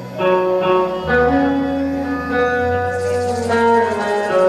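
Live band playing an instrumental passage: a melody of held notes on electric guitar over a bass line that comes in about a second in.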